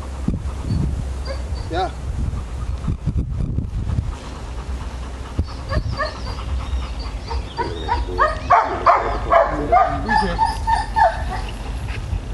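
Rottweiler whining and barking, with a run of barks from about eight seconds in.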